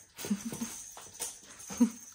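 A young domestic cat giving a few short calls while pouncing on a feather wand toy, the loudest call near the end, with a couple of light knocks from the play in between.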